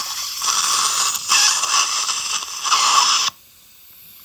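Dental surgical suction tip drawing blood and saliva out of a freshly emptied wisdom-tooth socket, a loud irregular sucking hiss that cuts off suddenly a little over three seconds in.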